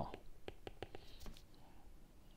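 Faint, light taps and clicks of a stylus tip on a tablet's glass screen while handwriting, several in quick succession.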